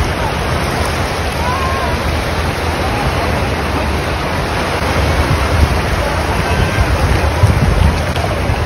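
Shallow sea surf washing around the waders, with wind buffeting the microphone in a low gusty rumble that grows stronger in the second half. Faint distant voices come through once or twice.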